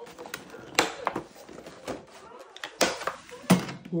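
Clear plastic clamshell strawberry container being handled and pried open: about half a dozen sharp plastic clicks and snaps at irregular intervals, the loudest about three and a half seconds in.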